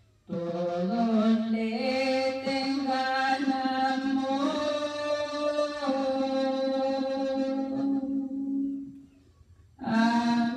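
A woman singing a Spanish-language praise hymn (alabanza) solo and unaccompanied: one long phrase of slow, held notes that begins just after the start and breaks off about a second before the end.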